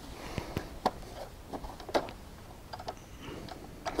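Baby Lock sewing machine stitching a quarter-inch seam through cotton batik strips, heard as quiet, light ticking and clicking.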